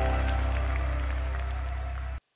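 The ballad's backing band holding its final chord and slowly fading, with audience applause beginning faintly beneath it.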